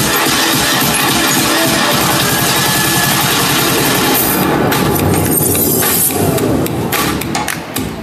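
Loud dance music played over stage speakers for a dance routine: a dense, full mix that thins out about four seconds in and breaks into sharp, separated beats near the end.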